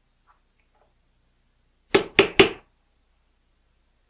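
Three quick scrapes of a metal pick against the edge of a steel bullet-sizing die, a little apart from each other about two seconds in, shaving off a protruding ring of lead shot.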